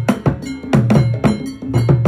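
Ghanaian traditional drum ensemble: several tall barrel drums struck with sticks and hands in a fast, steady rhythm of about four strokes a second, with a ringing metal bell over the drums.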